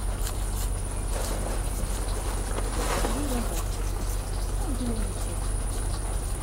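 A steady low hum with a thin high whine above it, and two short falling bird calls about three and five seconds in.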